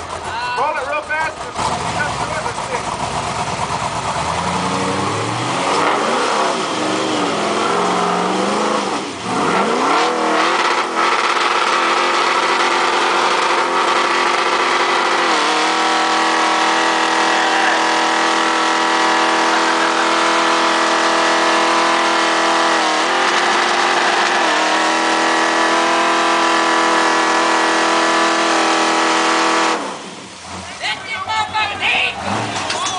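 Propane-fuelled 396 small-block V8 with 12:1 compression in a rock-crawler buggy, revving up over several seconds and then held at high revs for about twenty seconds as the tyres spin and smoke on the rock. The pitch steps up about halfway through and dips briefly twice near the end.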